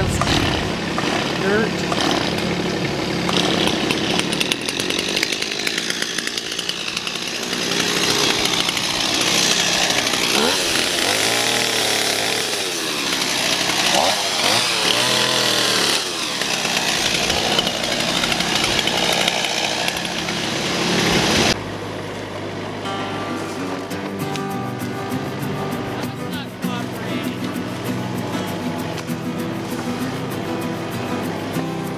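A chainsaw cutting, its pitch rising and falling as it revs. About two-thirds of the way through the sound switches abruptly to a Kubota mini excavator's diesel engine running steadily under digging.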